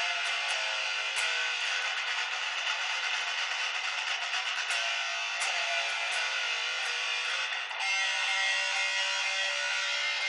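Strat-style electric guitar being played, a continuous run of strummed chords and riffs with a brief break about three-quarters of the way through.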